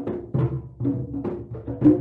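Drums played in a quick, steady rhythm, with several ringing, pitched strikes a second.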